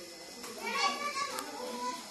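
Young children's high-pitched voices as they play, calling and chattering over one another.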